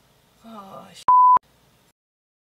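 A woman's voice starts a short falling utterance and is cut off by a loud, steady censor bleep lasting about a third of a second, the kind laid over a swear word.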